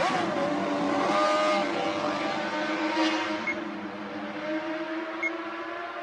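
Honda RC165 six-cylinder racing motorcycle engine heard at high revs out of sight, its pitch jumping with gear changes near the start and about a second in, then fading gradually as it pulls away.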